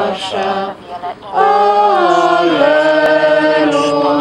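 A small group of voices singing a slow hymn in unison without accompaniment, with long held notes and a short pause for breath about a second in.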